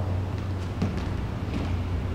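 Light footfalls of sneakers on a plastic aerobics step platform during hamstring curls, a few soft taps, over a steady low hum.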